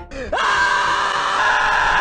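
A man's loud, long scream, held steadily on one pitch from about a third of a second in.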